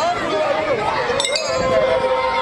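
Struck iron percussion instrument giving a sharp, ringing metallic clink a little past halfway, over the voices of a crowd.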